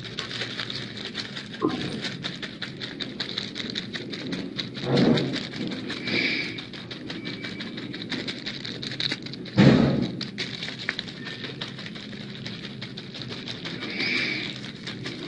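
Continuous crackling and rustling, with a few dull thumps; the loudest thump comes about two-thirds of the way through.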